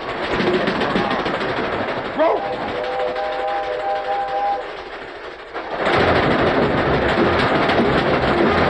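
Cartoon train sound effects: a train running with a steady rushing rattle, and a steam whistle chord blowing for about two seconds a few seconds in. Louder orchestral music takes over near the end.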